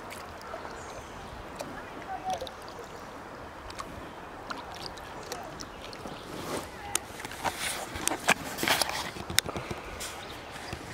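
Creek water lapping and splashing around a paddled kayak, with short splashes and knocks that come thicker and louder in the last few seconds.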